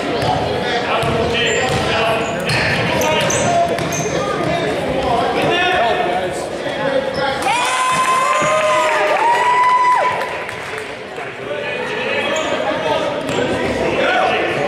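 A basketball bouncing on a hardwood gym floor, with sneakers squeaking, several long squeals in the middle, and voices echoing in the large gym.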